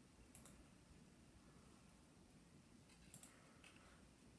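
Near silence with a few faint clicks, one about half a second in and a couple more near the end: computer mouse clicks choosing Shut Down, which brings up the shutdown dialog.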